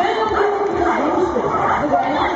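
A dog yipping and barking in short sharp calls over a steady background of crowd chatter.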